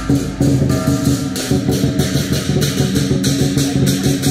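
Music with instruments and a steady beat.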